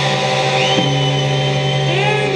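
Heavy metal band playing live, with electric guitars and bass holding sustained notes. About a third of the way in, a high tone slides up and then holds.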